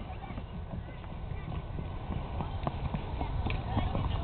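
Light, irregular taps and scuffs of a toddler's small shoes as he climbs off the end of a plastic slide and walks across rubber playground matting, over a steady low rumble.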